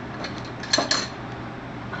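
A small metal can being handled and worked open on a kitchen counter: a few light metallic clicks and clinks, bunched about three quarters of a second in, against a low background.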